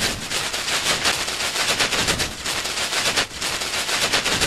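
Machine-gun fire sound effect: a fast, unbroken volley of shots.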